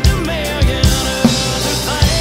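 Yamaha Maple Custom drum kit played along to a country song recording: kick and snare strokes roughly every half second over the track's guitars, with no singing.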